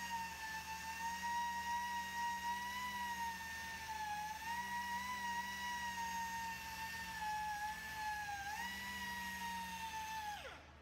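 A 2-inch pneumatic mini polisher runs with a steady high-pitched air-motor whine while its microfiber pad cuts oxidised single-stage paint with compound. The pitch wavers and dips slightly twice, about four and eight and a half seconds in, then recovers.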